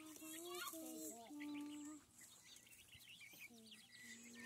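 Chickens calling faintly: a few drawn-out low calls in the first two seconds, then only scattered short high chirps.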